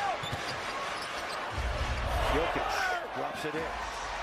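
Basketball bouncing on the hardwood court amid steady arena crowd noise, with a few knocks early on and the crowd swelling in the middle.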